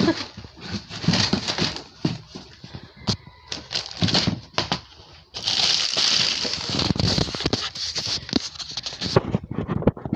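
Rustling and handling noise close to the phone's microphone, with scattered clicks, and a denser, steadier rustle from about five seconds in.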